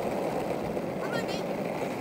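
Skateboard wheels rolling steadily over asphalt while coasting downhill, a continuous rough rumble.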